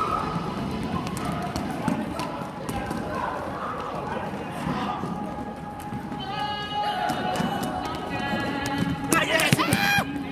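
Students running on a wooden gym floor: quick footfalls and thuds, with indistinct voices echoing in the gym. A few sharp squeaks come near the end, typical of sneakers on the court.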